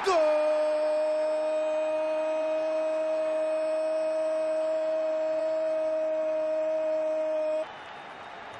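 A football commentator's goal call: one long, high shouted note held at a steady pitch for about seven and a half seconds, then cut off.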